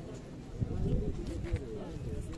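Several people talking at once, no single voice standing out, with a dull low thump just after half a second in and a short click near the middle.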